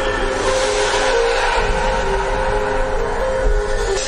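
News channel intro sting: held electronic tones under a loud, steady rushing whoosh.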